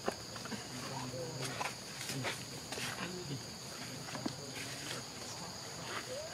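Forest ambience: a steady insect drone at two high pitches, with scattered clicks and faint, low, speech-like murmurs.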